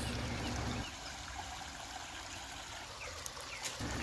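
Small rock waterfall of a backyard koi pond trickling, a faint steady hiss of running water.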